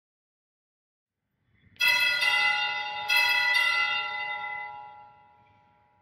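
A bell struck four times in two quick pairs, each stroke ringing on and the sound fading away over a couple of seconds, signalling the start of the Mass just before the entrance hymn.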